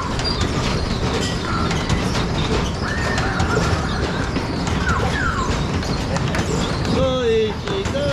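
Fairground ambience: a steady low rumble with scattered voices over it.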